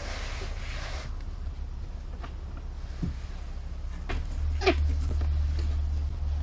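A brief scraping as the burr is cleaned off a freshly drilled hole in a plastic bucket, then handling of the bucket and a PVC pipe being pushed through a rubber grommet in its wall, with a couple of short squeaks of pipe on rubber in the second half. A steady low rumble runs underneath, louder toward the end.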